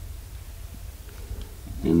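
Low steady hum with a faint tick or two, then a man's voice begins near the end.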